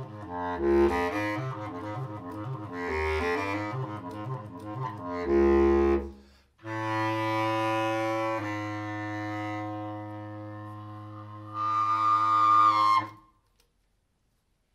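Solo bass clarinet improvising: a run of quick notes moving up and down, then a short loud low note. After a brief break comes one long held low note that swells louder near the end and stops about thirteen seconds in.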